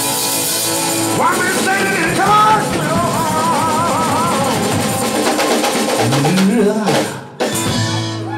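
Live blues-rock band playing: a man singing long notes with vibrato over acoustic guitar, drum kit and tambourine. The band breaks off sharply for a moment near the end, then comes back in.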